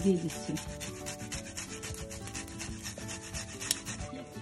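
Garlic cloves being grated on a handheld stainless steel fine rasp grater: quick, repeated scraping strokes.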